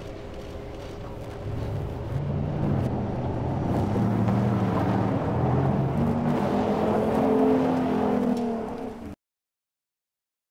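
Sports car engine revving and accelerating, its pitch climbing in steps and the sound growing louder from about a second and a half in. It cuts off abruptly near the end.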